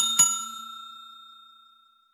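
Notification-bell ding sound effect, struck twice in quick succession and ringing out, fading away over about a second and a half.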